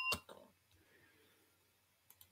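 A bell-like chime rings out and dies away, with a single sharp click just after the start, then near silence.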